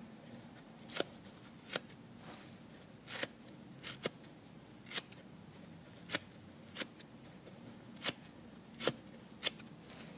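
The dry, soft foam side of a kitchen sponge being ripped apart by hand into small pieces: a string of short, crisp tearing snaps, roughly one a second.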